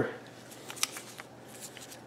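A few faint, light clicks and rustles as a new rear bicycle derailleur is handled in gloved hands.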